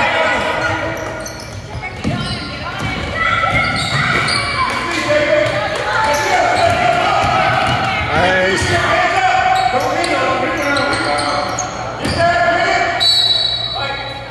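Basketball dribbled on a hardwood gym floor, the bounces echoing in a large hall, with voices calling out over it.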